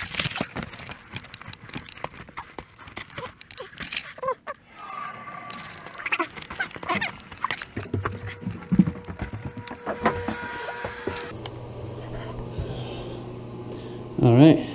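Footsteps and handling noise of a person walking with a camera, including up carpeted stairs: a busy run of small knocks, shuffles and clicks, with a low steady hum in the last couple of seconds.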